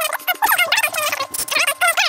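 Speech played back at several times normal speed: rapid, high-pitched chatter with no intelligible words.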